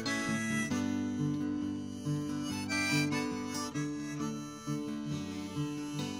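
Harmonica in a neck rack playing a melody of held notes and chords over an acoustic guitar.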